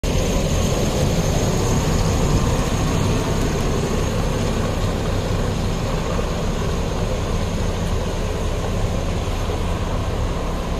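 Backhoe loader's diesel engine running steadily close by, growing slightly fainter as the machine pulls away down the flooded street.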